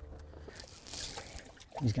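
A short soft splash and slosh of water about a second in, as a small largemouth bass is put into the boat's livewell.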